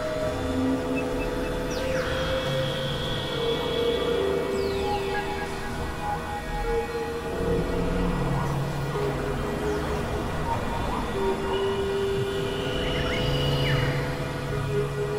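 Experimental electronic drone music: held synthesizer tones that shift pitch every second or two over a gritty wash of noise, with a few falling swept glides.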